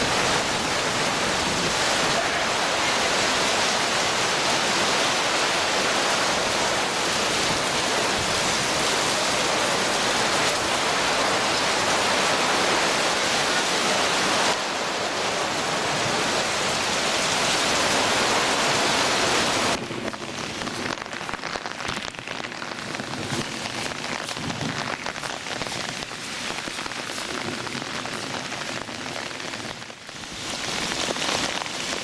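Torrential rain in a thunderstorm, a loud, dense, steady hiss of rain pouring down. About two-thirds of the way through it drops abruptly to a quieter, more spattering rain.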